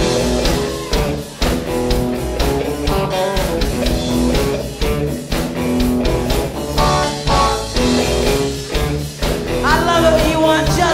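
Live blues band playing: electric guitars and electric bass over a drum kit keeping a steady beat.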